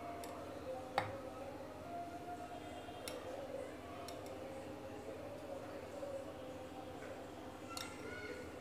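A few light clicks and clinks of a bowl against glass mugs, the sharpest about a second in, as thick custard is poured over chopped apple.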